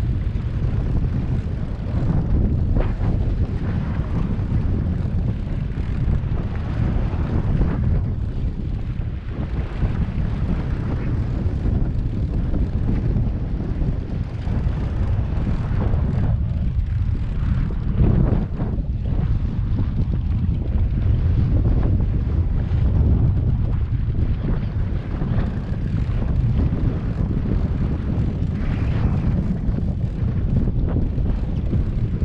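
Wind buffeting the microphone over the steady drone of a boat's twin outboard motors and water rushing past the hull, a continuous low rumble with no break.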